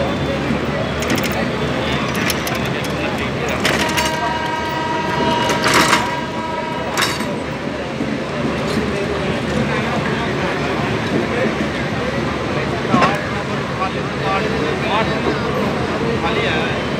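Express train coaches rumbling past on the rails. A train horn sounds once, held for about three seconds, starting about four seconds in. A single sharp knock comes later.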